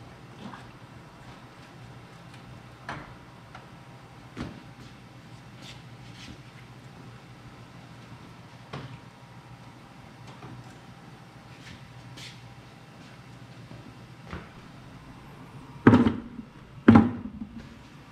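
Mild steel plasma-table slats being lifted out of the water table: scattered light metal clinks and knocks over a steady low hum. Two loud knocks come near the end.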